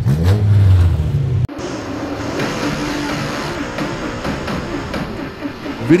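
Dirt late model race car engines running, with a rise and fall in pitch in the first second and a half; the sound cuts off suddenly and switches to another stretch of engine noise with a faint wavering pitch.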